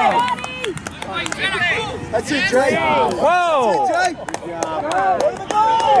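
Several people shouting and calling out over one another across a soccer field, the voices of sideline spectators and players overlapping throughout, with a few short sharp knocks near the middle.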